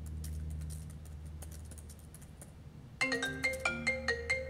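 Fingers typing on a MacBook laptop keyboard, a patter of light clicks over a steady low hum. About three seconds in, a phone ringtone starts: a quick marimba-like melody of short ringing notes, louder than the typing.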